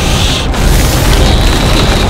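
Film-style sound effect of energy beams firing and locking together: a loud, unbroken wash of noise heavy in the bass, with a thin high whine coming in about halfway through, over music.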